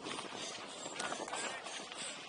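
Kid's Transition Ripcord mountain bike descending a loose dirt downhill trail, heard from a helmet camera: tyres rolling and crunching over dirt with a steady run of small clicks and rattles from the bike, under a haze of wind on the microphone.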